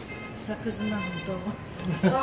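People talking, too indistinct to make out, with a couple of light clicks.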